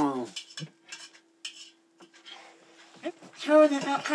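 A metal spoon scraping and clinking against a metal plate of food: a few light, scattered scrapes and taps.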